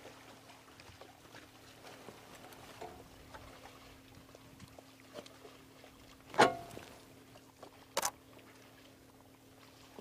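Cape buffalo herd wading and drinking at a waterhole: faint sloshing and splashing of water over a low steady hum. Two sharp clicks come in the second half, about a second and a half apart; the first is the louder and ends in a brief falling tone.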